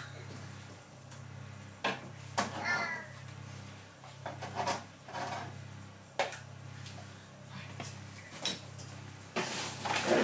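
Faint, indistinct voices with a few sharp light clicks and knocks scattered through, over a steady low hum.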